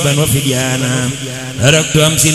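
Male chanting of an Arabic devotional poem in the Senegalese khassida style, sung in long wavering lines over held notes.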